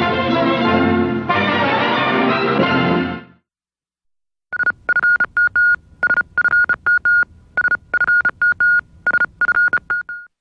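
The show's closing theme music ends about three seconds in. After a second of silence comes a rapid string of short and longer electronic beeps, all on one high pitch and in an uneven rhythm.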